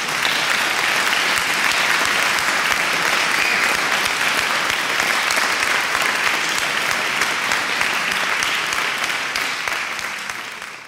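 Audience applause, a dense steady clatter of many hands clapping, beginning to fade right at the end.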